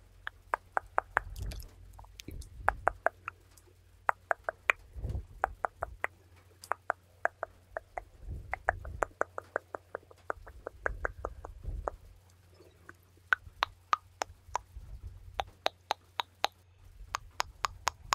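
Close-miked 'tuk tuk' ASMR mouth sounds: rapid tongue clicks in quick runs of about three to five a second, broken by short pauses. Now and then a soft low thump, as hands or a brush brush against the microphone.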